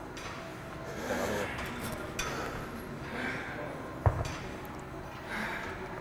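Seated cable row machine worked through repetitions: faint noise repeating about every two seconds with each pull, and a single sharp knock about four seconds in.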